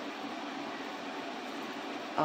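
Steady, faint hiss of background room noise with no distinct events.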